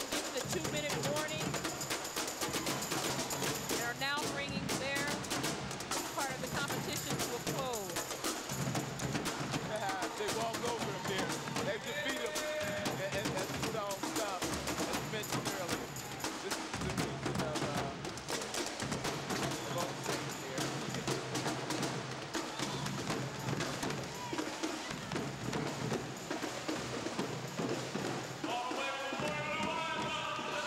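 Marching snare drums and a bass drum playing a continuous drill-team cadence, with voices shouting over the drumming, louder near the end.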